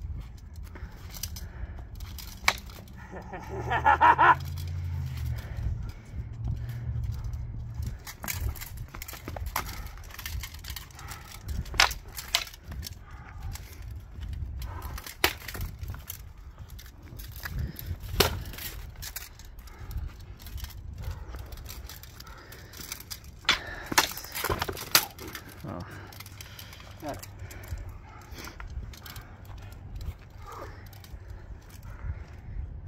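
Steel longswords clashing in sparring: sharp metallic clacks at irregular intervals, with a quick cluster of several strikes late on. A brief voice sounds about four seconds in, over a low rumble of wind on the microphone.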